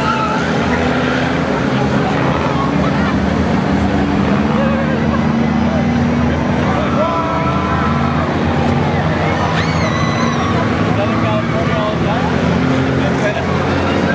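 A pack of skid-plate race cars running laps together: several engines hold a steady low note, with the scraping of skid plates dragging on the asphalt, because the rear wheels are locked and do not turn.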